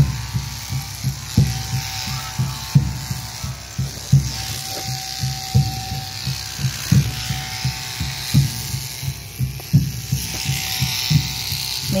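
Electric shearing handpiece running steadily while it clips the fleece off a vicuña, a thin steady hum with irregular low thumps underneath.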